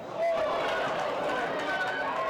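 People's voices calling out and talking over a crowd's background noise. It gets louder a moment in.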